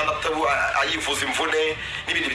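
Speech only: a voice talking continuously, with a radio-like sound.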